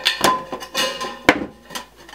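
Tin snips cutting through thin galvanized steel roof flashing: a few crunching metal snips, with one sharp snap a little past halfway.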